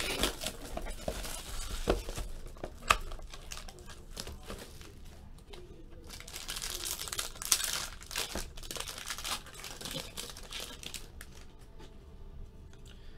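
Plastic wrapper of a 2016 Panini Gala football card pack crinkling and tearing as it is opened by hand, with the cards inside handled and slid out. The crinkling comes in irregular spells, with a few sharp crackles.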